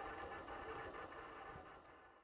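Faint, even hiss-like tail of a logo-animation sound effect, slowly fading away toward the end.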